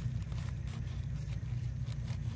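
A steady low hum, with faint scraping from a knife cutting through the tough base of a hen-of-the-woods (maitake) mushroom.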